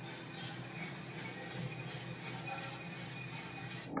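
Gas-fired drum coffee roaster running, a steady hum with the coffee beans tumbling in the turning drum and faint light clicks a few times a second.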